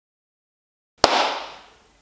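A single sharp hit about a second in, followed by a hissing tail that dies away over about a second.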